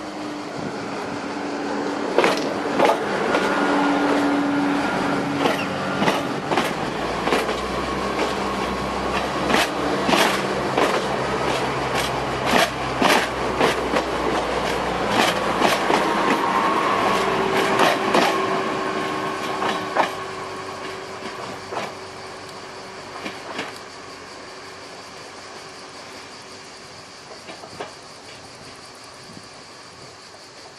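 SNCF AGC B 81500-series bimode railcar passing close by on its diesel engines, with a steady drone of engine and running gear. Its wheels make a quick, uneven run of sharp clicks over the track. The sound swells as it comes past and fades as it runs away over the last few seconds.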